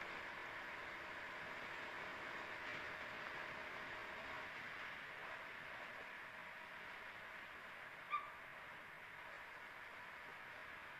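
Faint, steady riding noise of an RS125FI motorcycle on the move: engine and wind rush on the microphone. One short pitched chirp comes about eight seconds in.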